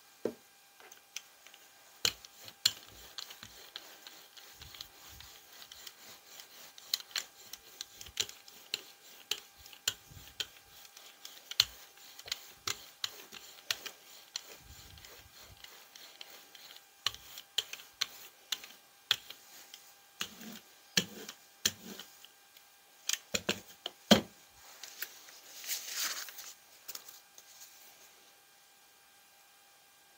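Brayer rolling acrylic paint out across a gel printing plate, giving irregular sticky clicks and ticks. A short rustle follows near the end.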